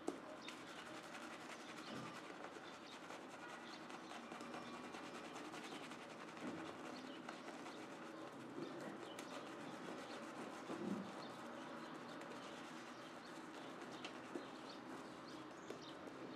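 Focus Shavette razor scraping through lathered beard stubble on the second pass, a faint, fine crackling.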